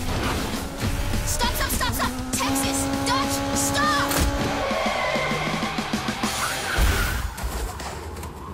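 Cartoon action soundtrack: a dramatic music score mixed with vehicle and crash sound effects. A heavy low impact comes about seven seconds in.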